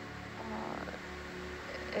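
Steady low machinery hum in the ship's control room, with a low throb pulsing a few times a second beneath it.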